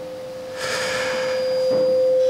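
A single steady tone ringing through the lecture hall's public-address system, like microphone feedback, swelling slowly louder, with a soft breathy rustle in the middle.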